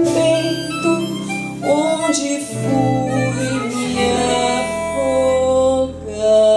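Harmonica solo over a live band accompaniment, the harmonica holding long notes and sliding up into one about two seconds in.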